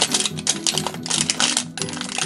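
Plastic wrapper crinkling and tearing as it is peeled off a toy surprise ball, a dense run of quick crackles.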